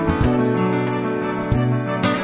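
Band music without singing: an instrumental stretch of a folk-country song, with guitar over a bass line and a steady tick of drum cymbals.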